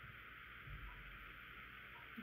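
Near silence: steady faint room hiss, with one faint low thump a little under a second in.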